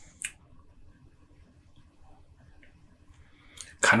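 Quiet room tone with a faint steady hum, broken by one short soft click about a quarter of a second in; a man starts speaking right at the end.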